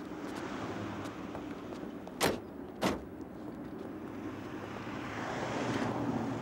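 Car running steadily with two sharp knocks a little over half a second apart, about two seconds in: an open roadster's door being shut.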